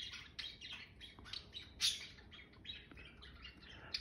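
Pet budgerigars chirping: a string of short, high, scattered chirps, fairly soft.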